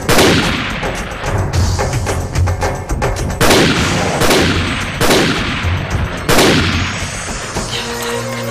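Film sound effects: five loud gunshots, each with a long echoing tail. The first comes at the start and the other four fall between about three and a half and six and a half seconds in. They play over dramatic percussive background music.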